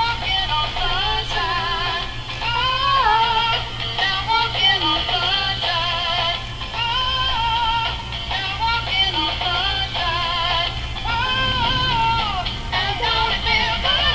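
A battery-powered dancing flower toy playing a song: a high-pitched synthetic singing voice with wavering pitch over a backing tune.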